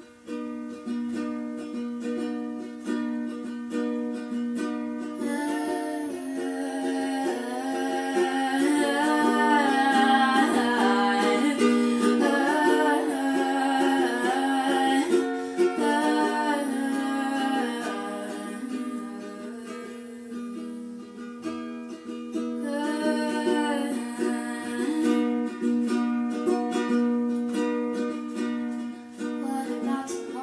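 Ukulele strummed steadily, with a sung vocal melody joining about five seconds in, easing off around sixteen seconds and returning briefly a little past twenty seconds.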